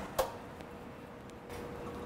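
A single click as the door of a Vulcan commercial convection oven is opened, followed by a faint steady hum.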